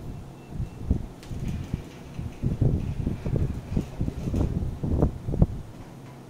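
Coloured pencil rubbing back and forth on paper on a desk, a run of dull scratchy strokes about three a second, ending near the end.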